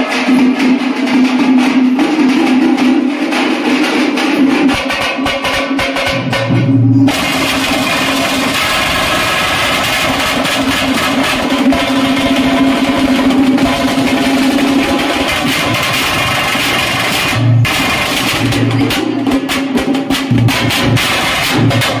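Folk drum ensemble for a Veeragase dance, large double-headed drums beaten with sticks in a loud, steady, driving rhythm over a held low tone. The sound drops out briefly about seven seconds in and resumes.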